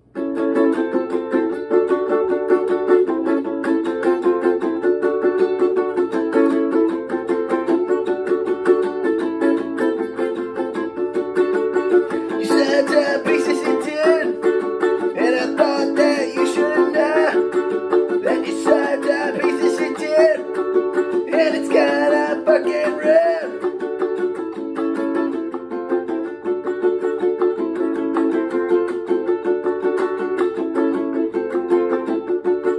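Ukulele strummed hard in a quick, steady rhythm, starting abruptly. From about twelve seconds in to about twenty-three seconds, a man's voice comes in over the strumming in about four bursts.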